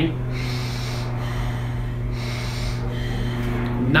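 A man breathing deeply and audibly in and out through the nose: a few long rushes of air, one after another, in the diaphragmatic nasal breathing recommended for easy running. A steady low hum runs underneath.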